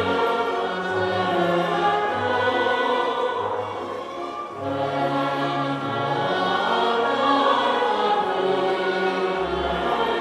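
A mixed choir singing with a full orchestra of strings and winds in a live classical performance. The sound dips briefly a little before the middle, then swells again.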